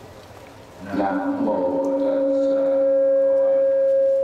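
Public-address microphone feedback: a loud, steady howl held at one pitch, rising out of a voice about a second in and dying away near the end as the microphone is taken in hand.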